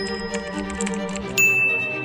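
Sound effects over background music: quick keyboard-typing clicks, then a bright electronic ding about one and a half seconds in that rings on.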